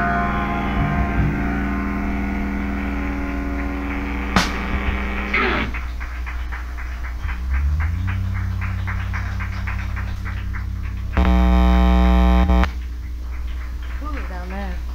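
Live rock band's electric guitars ringing out and fading over a steady amplifier hum, with a sharp click about four seconds in. Then the hum goes on with light ticking, and a loud buzzy held tone sounds for about a second and a half near the end.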